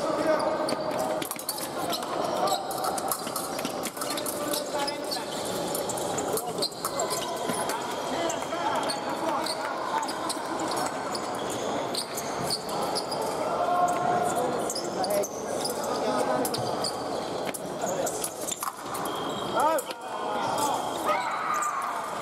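Fencing footwork thudding on a metal piste and scattered sharp clicks of épée blades, over continuous chatter from many voices echoing in a large hall.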